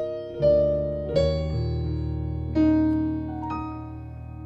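Digital piano playing slow altered gospel chords from a progression that uses all twelve tones: three chords struck in the first three seconds, each left to ring and fade over a held low bass note, with a lighter note added near the end.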